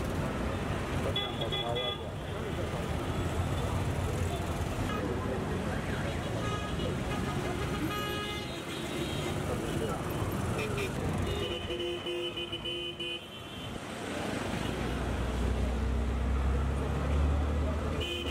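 Busy street traffic: vehicle engines running, with several short horn toots and one longer horn blast about two-thirds of the way through. A nearby engine's low rumble builds and is loudest near the end.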